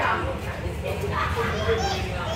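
Untranscribed voices talking, with children's voices among them.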